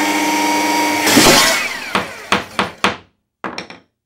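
Woodworking sound effects: a power saw whining steadily, then a louder rasp about a second in as it cuts, followed by four sharp knocks and a brief patter of light clicks near the end.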